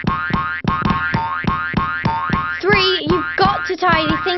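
Cartoon boing sound effects, springy tones that wobble up and down in pitch, over bouncy children's background music with a quick, steady beat; the boings are loudest from a little past halfway.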